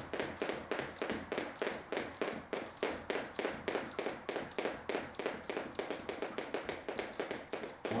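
Two speed jump ropes ticking on a gym floor with each turn, mixed with quick light foot landings, in a fast, even clicking rhythm of several strikes a second during a speed alternate-step run.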